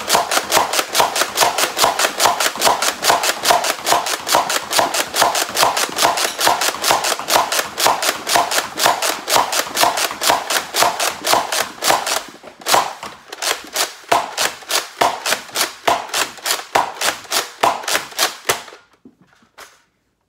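Nerf Rival Hades pump-action, spring-powered blaster slam-firing: the pump is worked rapidly with the trigger held, each stroke ending in a sharp plastic clack as the spring releases a round. The clacks come about three or four a second, pause briefly about twelve seconds in, and stop shortly before the end.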